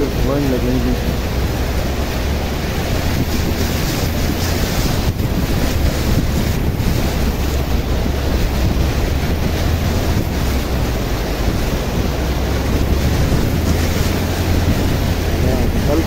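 Fast-flowing floodwater rushing and churning over a road, a steady loud wash of water noise, with wind rumbling on the microphone.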